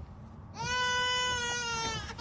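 A baby crying: one long wail starting about half a second in, its pitch sagging slightly toward the end.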